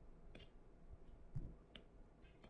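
A few faint, sharp clicks of a stylus tapping a touchscreen while digits are handwritten, with a soft low thump a little past halfway.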